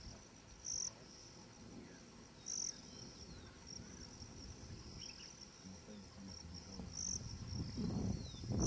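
A steady, high-pitched insect trill. It grows briefly louder three times: just under a second in, at about two and a half seconds, and near the end.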